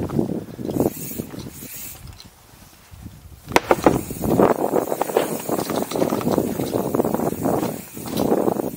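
Mountain bike rolling down rough dirt singletrack, its chain and frame rattling and the rear hub ratcheting while it coasts. About three and a half seconds in, a few sharp knocks start a much louder, rougher stretch of rattling as it crosses roots and rocks.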